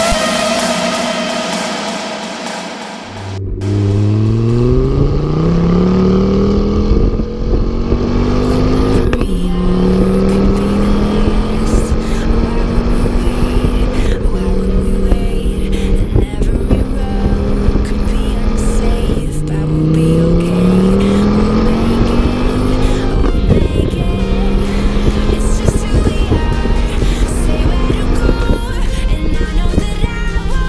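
Car engine accelerating under load, its pitch rising twice and dropping back at gearchanges, with steady cruising in between, over constant road and tyre noise, picked up by a camera mounted on the outside of the car.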